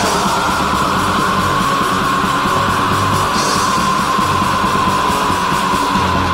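Black/thrash metal recording: distorted electric guitars and drums, with one long high note held over the top that sinks slightly in pitch.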